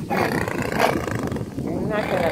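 Mute swan at close range giving a harsh, noisy call, strongest in the first second.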